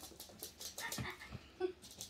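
Faint ticking of chihuahua puppies' claws on a laminate floor as they scamper about, with a few soft thumps about a second in.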